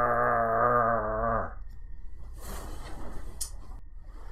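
A man's deep, drawn-out groan in imitation of Frankenstein's monster, held on one steady pitch and stopping about a second and a half in. It is followed by a quieter rustle of handling with a short click near the end.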